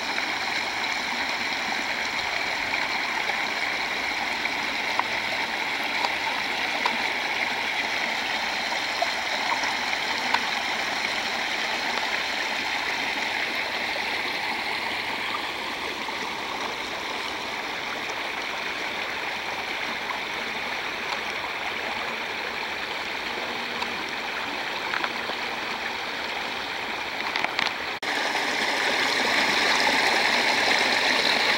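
Water rushing along a shallow drainage ditch, a steady, even rush that gets a little louder near the end.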